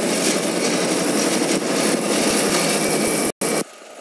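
Tractor engine running loud and steady while pulling a homemade potato planter through the soil. The noise cuts out briefly near the end and comes back much quieter.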